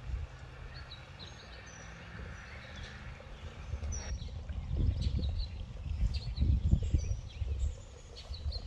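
Birds chirping in short high calls outdoors, over a low rumble and soft thumps on the microphone that pick up about halfway through.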